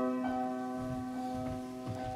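A piano note struck and left to ring, its low tone and overtones holding steady and slowly fading, with a few soft thumps underneath.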